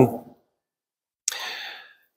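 A single audible breath close to the microphone about a second in, starting sharply and fading over about half a second, between stretches of dead silence.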